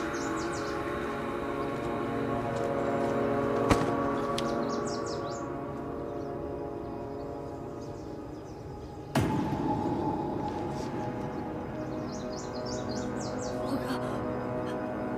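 Tense drama score of sustained, layered drone tones, with a sudden sharp hit about nine seconds in and a single click a little before four seconds. Birds chirp faintly in two short clusters, about a third of the way in and near the end.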